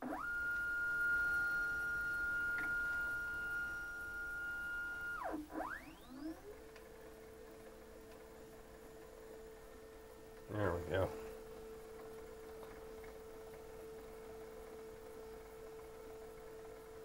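The MakerBot Method X's filament-feed motor whining as it pulls PVA filament in from the material bay. It sweeps up to a high steady whine for about five seconds, swoops down and back up, then settles into a lower steady whine.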